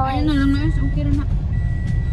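Steady low rumble inside a car, with a toddler's brief high-pitched babbling in the first second or so.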